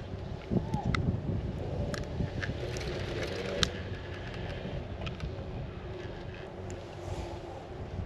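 Steady low rumble of wind and chairlift ride noise on the microphone, with a few faint sharp clicks in the first half.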